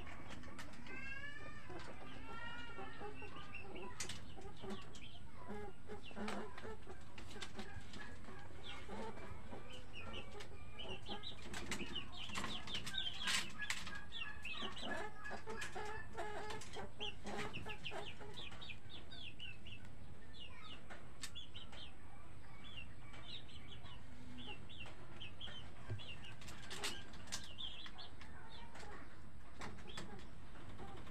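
Chickens clucking and small birds chirping in a continual busy chatter, with scattered sharp clicks and knocks.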